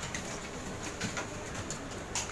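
Light clicks and taps of plastic infrared thermometers being handled and set into a polystyrene tray, heard several times over a steady background noise.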